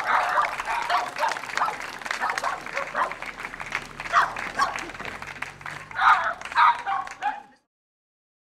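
A dog barking and yipping over and over in short bursts, several a second, until the sound cuts off about seven and a half seconds in.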